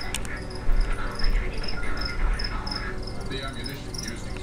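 A cricket chirping steadily, about three high chirps a second. A couple of low bumps come about a second in.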